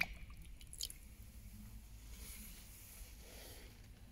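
Faint water sounds of a freshly zinc-plated bolt being swished by hand in a bucket of rinse water to neutralize the plating solution, with a few small splashes in the first second.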